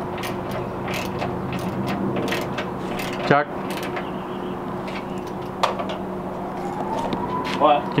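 Scattered light clicks and clatter of hand work in a car's engine bay, with tools and fittings being handled around the radiator plumbing. A sharper knock comes about three seconds in, over a steady hum.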